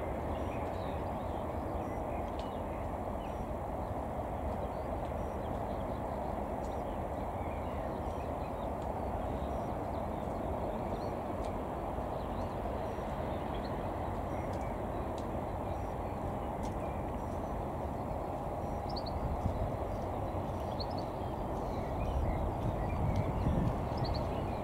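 Steady jet engine noise from a Boeing 787-9 taxiing, with a few faint bird chirps over it and a slight swell in loudness near the end.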